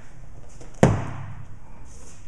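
A single sharp smack a little under a second in, as a double-edged combat knife strikes a swung punching mitt, with a short ringing tail. The blade caught the pad at an awkward angle and glanced off rather than cutting deep.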